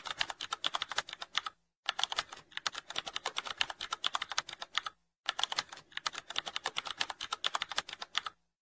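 Computer keyboard typing sound effect: rapid key clicks in runs of about three seconds, broken by two brief pauses.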